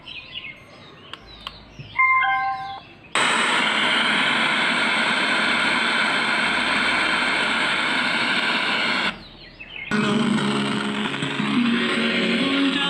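Ubon BT-260 Bluetooth speaker switching to FM radio mode: a short falling run of prompt beeps, then about six seconds of loud untuned FM static hiss. After a brief drop-out, a radio station's music comes through the speaker.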